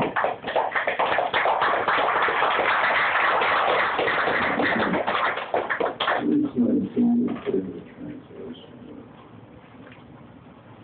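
Audience applauding at the end of a poetry reading: a dense patter of clapping that starts just at the outset, holds for about six seconds, then thins out and dies away, with a few brief voices near the end.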